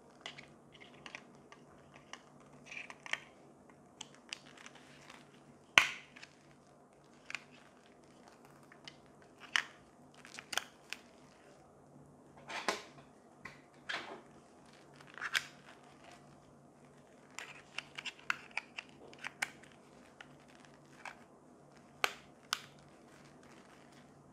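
Hands in leather gloves handling a Godox RC-A5 remote control as batteries are fitted into its compartment and the plastic battery cover is put back on. The sound is irregular sharp plastic clicks and rustling handling noise, with the loudest click about six seconds in and a pair of clicks near the end.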